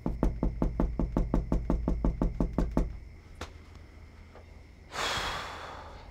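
A fast, even run of sharp knocks, about six a second for nearly three seconds, over a low hum. One more knock follows, then a short rush of hiss near the end.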